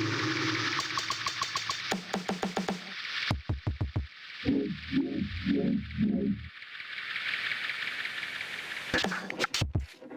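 Electronic beat loops and one-off samples played by an RP2040 audio-mixer board, triggered from the buttons of a rewired PS4 controller. Loops are muted and unmuted, so the beat cuts out and back in abruptly several times, with a repeating pitched sample near the middle.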